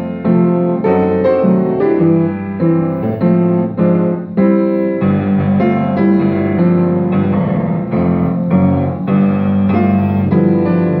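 Upright piano played with both hands, a slow hymn-like accompaniment of full chords struck at a steady pace.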